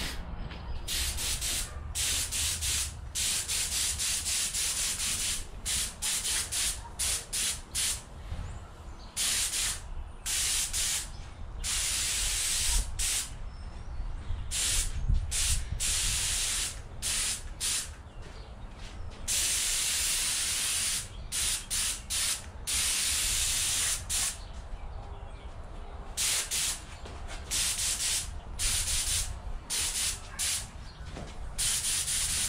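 Gravity-feed air spray gun on a compressed-air hose, its trigger pulled over and over: hissing bursts of air and atomised paint, mostly short with a few held for a second or two.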